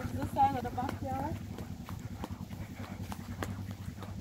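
Footsteps on grass and gravel while walking, with a short wavering voice, without clear words, in the first second or so.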